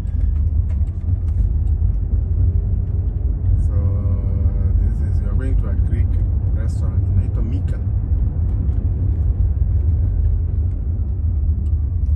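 Steady low road and tyre rumble inside the cabin of a Waymo Jaguar I-Pace electric car driving along a city street, with no engine note.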